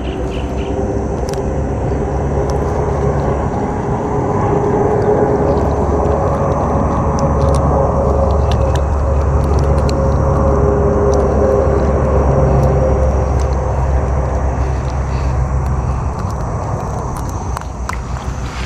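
A steady low rumble of a running engine, growing louder through the middle and easing off near the end.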